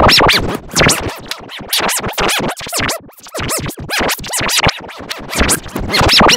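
A cartoon intro jingle run through a heavy audio effect that chops it into rapid stuttering fragments with swooping pitch bends up and down, sounding like record scratching.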